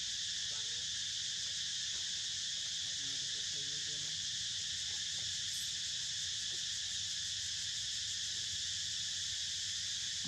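Steady, high-pitched drone of an insect chorus, unbroken and even in level.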